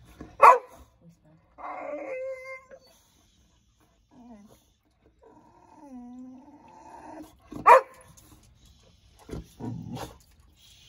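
Boxer dog barking sharply twice, about half a second in and again near eight seconds, with drawn-out pitched whines in between: a dog demanding food or drink from a person.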